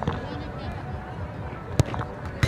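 A football struck hard once in a penalty kick, a single sharp thud near the end, over steady crowd noise.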